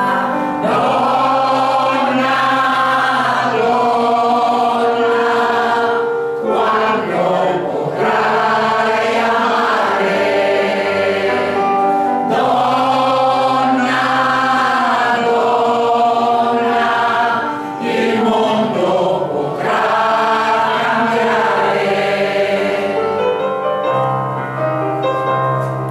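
Women's choir singing long, sustained phrases, with a short pause for breath about every six seconds.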